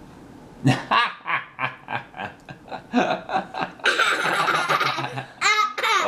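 Young child laughing hard: a quick run of short laughs, then a long high-pitched squealing laugh past the middle, then more bursts of laughter near the end.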